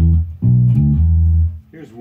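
Electric bass guitar played fingerstyle with its strings undampened, so the low notes ring out with full sustain: a short phrase of held notes that stops about a second and a half in.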